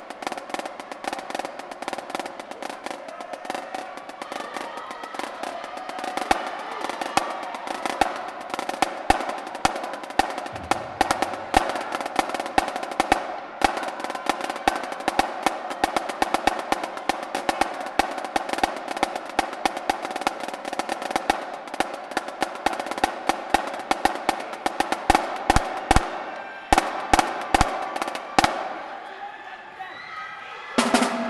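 Marching drumline playing a fast snare cadence, a dense run of rapid stick strokes. Over the last few seconds it thins to a handful of separate loud hits.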